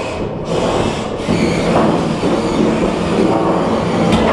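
Combat robot's spinning weapon running with a steady drone, over the noise of a crowd.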